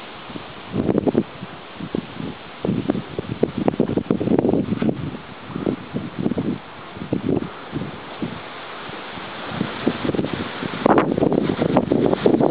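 Wind blowing over the camera microphone: a steady hiss broken by irregular gusts buffeting the microphone.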